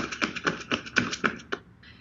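A rapid, even run of light taps or clicks, about eight or nine a second, stopping about one and a half seconds in.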